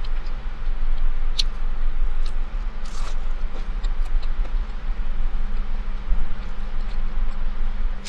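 Steady low hum inside a car's cabin, as of the engine idling, with a few faint clicks of chewing.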